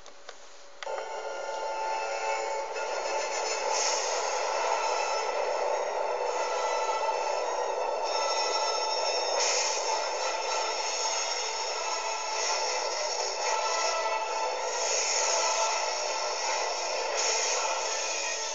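Film soundtrack played through small computer speakers and picked up by a phone: a dense, sustained swell of music and effects coming in about a second in, thin and tinny with no bass.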